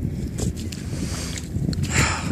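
Wind noise on the microphone, a steady low rumble, with a few soft footsteps on wet sand.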